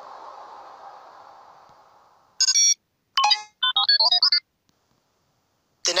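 A fading wash of sound dies away over the first two seconds, then a short electronic jingle of bright, stepped beeping notes plays in three quick phrases, the scene-transition sting leading into the next day.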